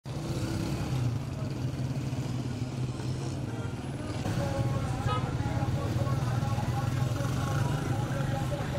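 Busy street traffic with motorcycle and car engines running at a steady low hum, and people's voices in the background that become clearer about halfway through.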